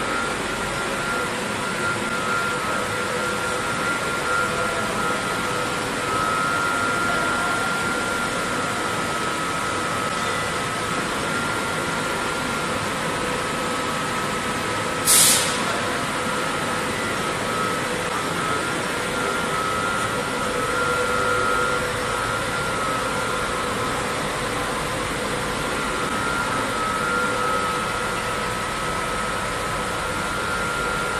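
Steady running noise of powder coating booth extraction fans, with a constant thin whine, and one short, loud hiss about halfway through.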